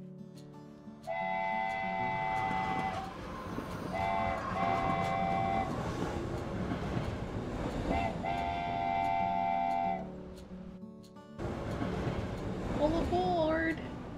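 Steam-train sound effect: a chord-like train whistle blows several times, with a rushing, chugging hiss beneath it, over background music.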